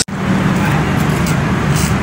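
Steady mechanical hum and rumble of railway station platform ambience, starting abruptly after a brief gap.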